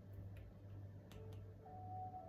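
Quiet room tone with a steady low hum and a few faint light ticks. A faint thin held tone comes in during the second half.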